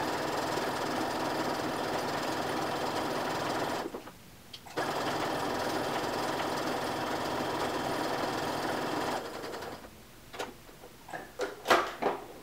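Domestic electric sewing machine running a long basting stitch through cotton fabric, a steady whirr that stops for about a second about four seconds in, then runs again until about nine seconds in. A few light clicks follow near the end.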